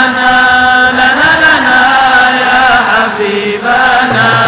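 Men's voices singing an Islamic devotional chant on long, drawn-out notes that bend slowly in pitch.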